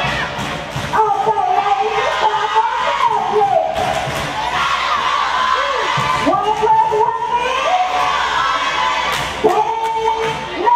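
Cheerleading squad shouting a chant together in long drawn-out calls that rise and fall in pitch, over the murmur of a gym crowd.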